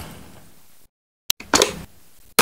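Novelty lighters clicking and snapping, with short bursts of steady flame hiss between sharp clicks, cut up by moments of dead silence.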